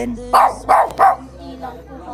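A Shih Tzu barking three times in quick succession, short sharp barks a third of a second apart. The small dog is barking at a stranger reaching a hand toward it; it is said to be angry at people it doesn't know.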